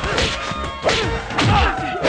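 Film fight sound effects: sharp punch-and-kick whacks, three hits spaced about half a second to a second apart.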